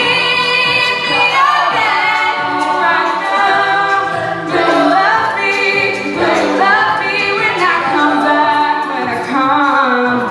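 An all-female a cappella group singing live: several voices in layered harmony, moving together from chord to chord over a held low note, with no instruments.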